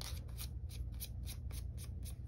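Fingernail scraping small die-cut cardstock scraps off a die-cutting plate in quick, faint, repeated strokes, about six or seven a second.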